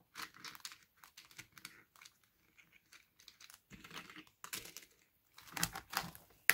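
Hands handling a decorated embellishment box: scattered light clicks and crinkly rustling, with a louder cluster of clicks near the end.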